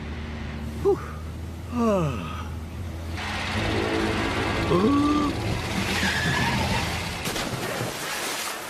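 Cartoon car sound effects: a small car's engine hums steadily, and from about three seconds in there is a long noisy tyre skid. Short vocal exclamations rise and fall over it, one of them a falling "whoa" about two seconds in.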